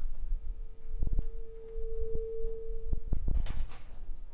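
A single steady pure tone held for nearly three seconds, with several low knocks and thumps around it and a short hissy burst near the end.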